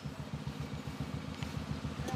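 Low, steady engine rumble with a fast, even pulse, like a vehicle idling close by.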